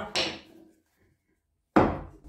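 Two sharp wooden knocks about a second and a half apart from splitting firewood with a hatchet: first the hatchet knocking into the log, then a louder knock as a second log is set down on the concrete floor.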